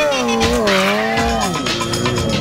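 Yamaha YZF-R6 600 cc inline-four engine revving, its pitch swinging up and down and dropping off, then rising again as the bike pulls away.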